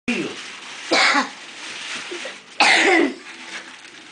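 A person coughing twice, once about a second in and again about halfway through, with faint talk in the room.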